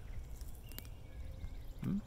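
A person biting off and chewing wisteria blossoms, quiet mouth sounds over a low rumble, with an approving "hmm" near the end.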